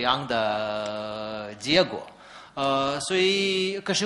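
A person's voice holding long, steady hesitation sounds ('uhhh') instead of words. The first lasts over a second. After a short pause come two more, the last one higher in pitch.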